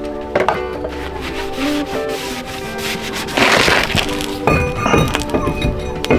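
Background music over brake work: a short burst of brake-cleaner spray about halfway through, then a few light knocks and a sharp clink near the end as a new steel brake disc is set onto the van's front hub.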